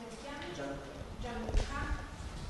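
Faint, indistinct speech from someone away from the microphone, with a single sharp knock about one and a half seconds in.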